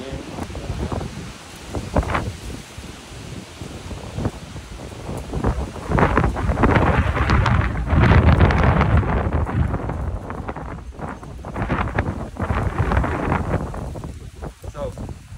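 Wind buffeting a phone's microphone: a rough, rumbling rush that swells in gusts, strongest from about six to ten seconds in and again near the end.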